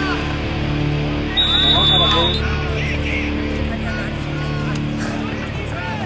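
Voices shouting from the sideline over music playing through a loudspeaker, with one short, high referee's whistle blast about a second and a half in.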